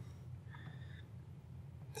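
Quiet room hum with one faint, short high beep about half a second in.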